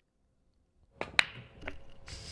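Pool table break sound effect: about a second in, a sharp crack of the cue ball hitting the rack, followed by a few quieter clacks of balls scattering.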